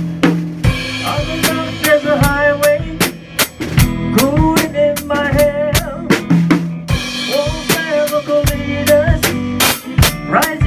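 Drum kit playing a steady beat of bass drum, snare and cymbals, with an electric guitar playing a melodic line with bent notes over it.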